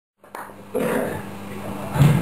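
Live-venue sound just before a band starts: a steady amplifier hum with a person's loud voice coming in about a second in.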